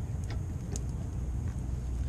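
A thin stream of gasoline running out of a GM inline fuel filter as it is unscrewed from the fuel line, spattering below, with a few faint clicks from the filter being turned by hand.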